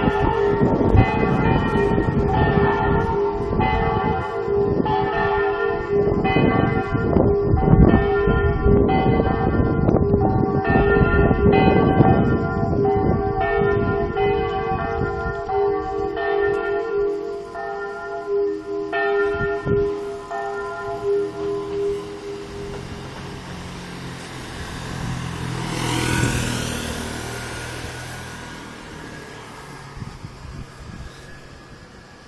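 Recorded church bells played from loudspeakers on a church dome, a bell simulator standing in for real bells, sounding a festive swinging peal of several bells. The strokes thin out and the ringing dies away about two-thirds of the way through. A vehicle then passes, loudest a few seconds before the end.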